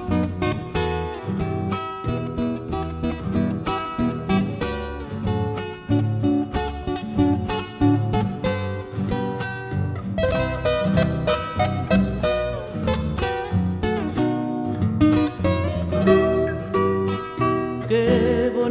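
Instrumental passage of an Argentine folk song: acoustic guitars plucking and strumming a rhythmic figure over a bass line, with no singing.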